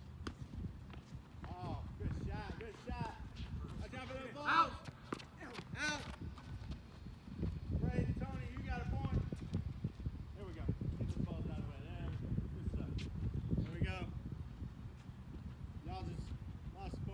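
Tennis being played on a hard court: sharp racket-on-ball strikes and ball bounces with scuffing, running footsteps, among scattered voices of the players.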